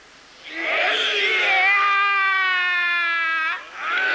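A long, drawn-out kiai shout from Jikishinkage-ryu Hojo kata practice, held for about three seconds on a steady, slightly falling pitch before breaking off, and a second shout starting near the end.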